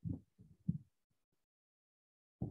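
A man's voice in short low fragments that trail off within the first second, then complete silence.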